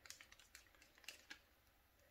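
Near silence: room tone with a few faint, light clicks scattered through it.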